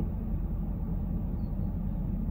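Steady low vehicle rumble heard from inside a car's cabin.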